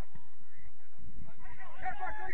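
A bird's fast series of arched, honking calls, faint at first and louder from about three-quarters of the way in, over a steady low rumble.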